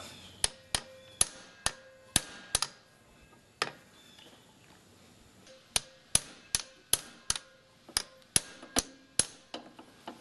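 A hammer striking a hand impact driver to break loose the screws of a Kawasaki Bayou 400 engine cover. The sharp metal-on-metal strikes come about two a second, each leaving a brief ring, with a pause of about two seconds midway.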